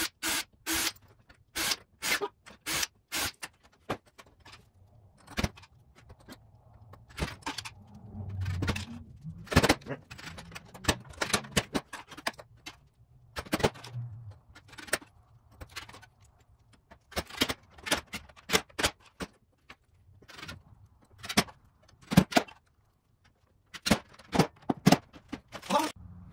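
Irregular clicks and knocks of small hard parts being handled and set down on a wooden workbench, with a brief low rumble about eight seconds in.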